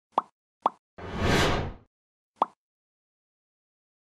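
Channel-logo intro sound effects: two quick pops, then a whoosh about a second in that swells and rises in pitch, then a third pop.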